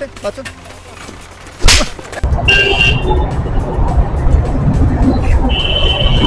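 Road traffic heard from a moving vehicle: low road and wind rumble that comes in suddenly a little after a sharp knock about 1.7 s in, with two short, high-pitched beeps like vehicle horns over it.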